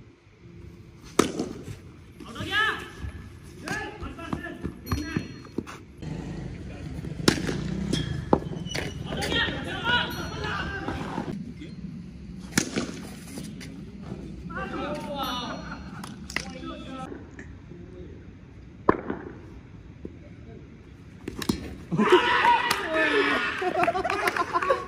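A few sharp knocks of a cricket bat hitting a taped tennis ball, the loudest about a second in and near 19 s, between stretches of players' voices calling out.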